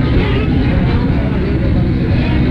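Lo-fi live band recording: a voice over a loud, muddy, steady low rumble from the stage.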